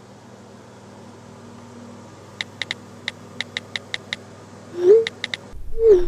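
Smartphone keyboard clicks as a text is typed on an iPhone: a quick run of about nine taps, then a few more near the end. A short, loud falling tone sounds about five seconds in, over a low steady hum.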